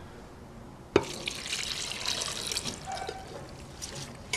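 Water poured into a pressure cooker onto chopped cabbage and rice. A knock about a second in, then a steady pouring trickle.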